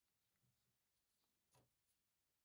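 Near silence, with a few faint taps and clicks of gloved hands fitting a thin metal strip onto the paper cutter's painted metal base, the clearest about one and a half seconds in.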